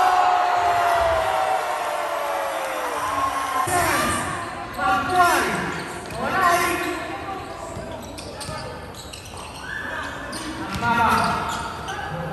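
Basketball game in a gym hall: the ball bouncing on the court with sharp hits, the loudest about five seconds in, under shouts from players and spectators, starting with one long drawn-out falling shout.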